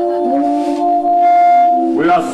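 Electronic keyboard holding a sustained organ-like chord of steady notes, the lower notes stepping to a new pitch a quarter second in and a brighter high tone joining for about half a second in the middle.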